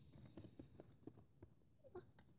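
Near silence with a few faint soft taps and clicks of a plastic doll being handled and moved.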